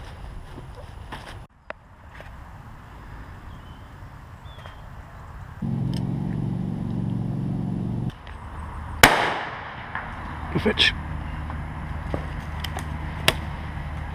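A single shotgun shot about nine seconds in, sharp, with a short echoing tail. Before it comes a steady low hum lasting about two seconds, and after it a few light clicks.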